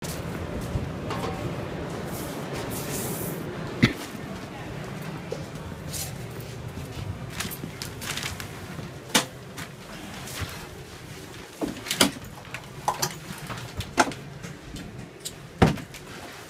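Background noise of a large hall with indistinct voices, broken by several sharp clicks and knocks, the loudest about four, nine, twelve and near the end.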